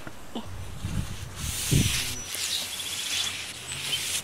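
A paper towel wiping across the flat steel cooktop of a Blackstone gas griddle gives a dry rubbing hiss that starts about a second in and runs on. A dull bump comes near the middle, and a few short bird chirps sound over the rubbing.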